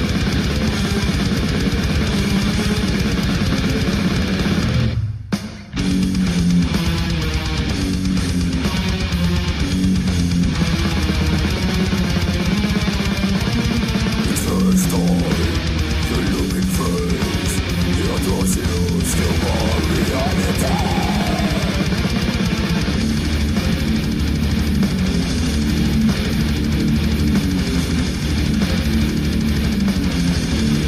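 Brutal death metal: distorted electric guitars and drums playing continuously, with a brief break in the music about five seconds in.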